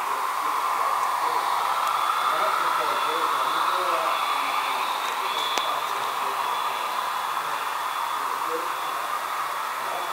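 Model train running on the layout's track: a steady whirring rumble of wheels and motor that swells a little in the first few seconds and then eases, with faint voices in the background.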